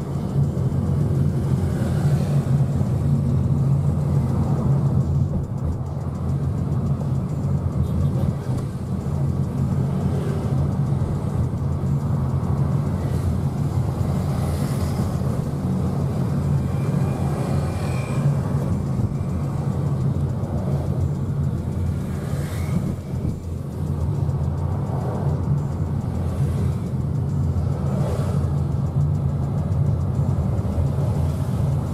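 Steady low rumble of a moving road vehicle, engine and road noise heard while riding along.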